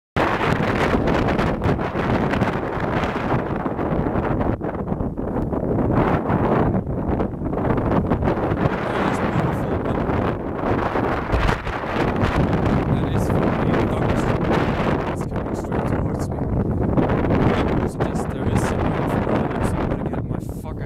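Wind buffeting the camera's built-in microphone: a loud, gusty rumbling noise that rises and falls throughout.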